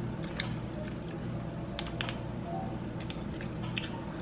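A person chewing a bite of white-chocolate-covered strawberry: a few small, sharp mouth clicks over a steady low hum.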